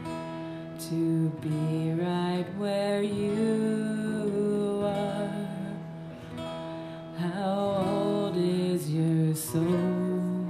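Acoustic guitar strummed in steady chords, with a woman singing over it in a live performance of a slow pop ballad.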